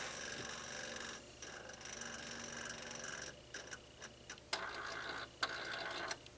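Benchtop spectrophotometer whirring and clicking while it measures the blank, a steady whir broken by short pauses and a few quick clicks in the second half. It stops near the end, once the blank is set to 100% transmittance.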